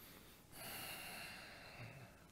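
One faint, long breath out, starting about half a second in and fading over about a second and a half.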